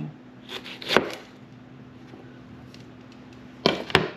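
Chef's knife knocking on a plastic cutting board while slicing a jalapeño: a few sharp knocks around one second in and two more near the end, with a faint steady hum between.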